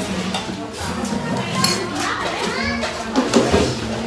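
Overlapping chatter of adults and children, with the occasional clink of spoons on plates.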